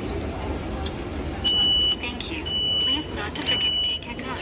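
Subway ticket vending machine beeping three times, about a second apart, each a steady high half-second tone, while it issues the tickets.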